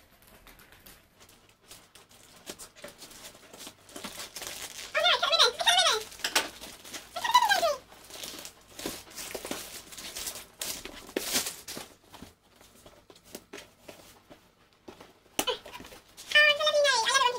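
Paper and plastic packaging rustling and crinkling, with the odd rip, as a parcel is opened and unwrapped by hand. Two short high-pitched vocal sounds come through, about five and seven seconds in, the second falling in pitch.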